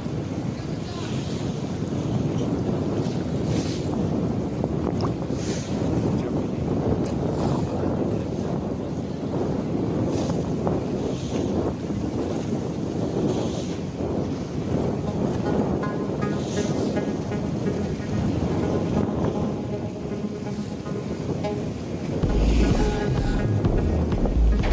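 Steady rushing wind on the microphone over choppy sea water. Music fades in faintly past the middle and turns loud with a deep bass near the end.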